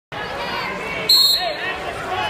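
Crowd voices echoing in a gym, cut by one short, sharp referee's whistle blast about a second in, signalling the start of the wrestling bout.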